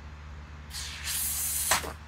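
Bottle rocket pressurised by elephant's toothpaste venting: a loud hiss of gas and foam spraying out for about a second, starting partway in and ending in a sharp pop.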